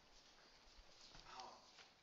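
Near silence: room tone, with a faint murmured "oh" a little past halfway.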